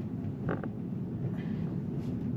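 Steady low road and tyre rumble inside a Tesla's cabin at low speed, with a short creak about half a second in and faint ticks later on.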